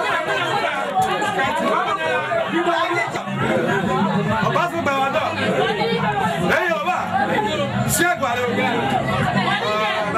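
Several men talking at once in a room: overlapping chatter, with a brief sharp click about eight seconds in.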